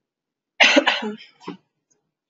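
A person coughing: a loud cough about half a second in, then a second, shorter one.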